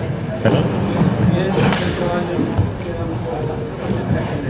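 Background talk of several people in a large hall, with two sharp thuds about half a second and a second and a half in.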